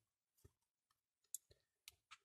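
Near silence with about four faint, short clicks as small metal parts of a dismantled vacuum tube are handled and set down on paper.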